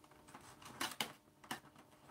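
Faint clicks and scraping of a small craft blade working at plastic toy packaging, with a few sharp ticks in the middle.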